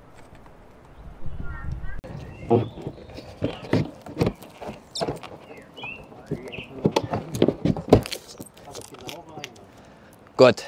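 A Dometic Mini Heki plastic roof window being set into the roof cutout of a camper van: a string of sharp knocks, taps and plastic bumps from about two seconds in as it is pressed into place.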